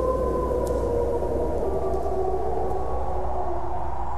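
Several wolves howling together over a low steady drone: long, drawn-out howls at different pitches that slowly fall.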